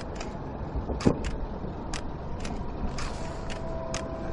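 Outdoor ambience: a low, steady rumble with sharp snaps at irregular intervals, roughly every half second.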